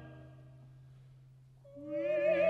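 A full orchestral and choral chord dies away into the concert hall's reverberation, leaving only a quiet low held note. Near the end a soprano voice enters with an upward slide into a sustained, wavering note.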